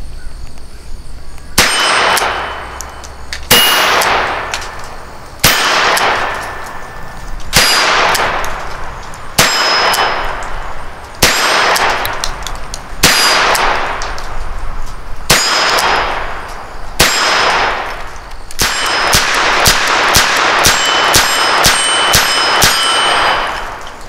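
Diamondback Sidekick double-action .22 revolver firing .22 Magnum, about nine shots roughly two seconds apart, each followed by a long metallic ringing clang. Near the end comes a quicker run of sharp metallic clinks over continued ringing.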